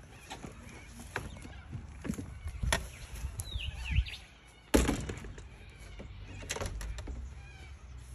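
Caravan entry door swung shut with one solid thunk a little past halfway through, after a few lighter knocks and bumps.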